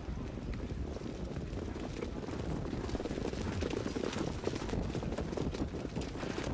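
Hoofbeats of a field of Standardbred trotters pulling sulkies behind the mobile starting gate: a dense run of hooves on the dirt track, a little louder in the middle.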